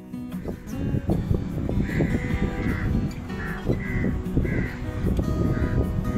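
Crows cawing: a longer caw about two seconds in, then a quick run of shorter caws and one more near the end, over background music.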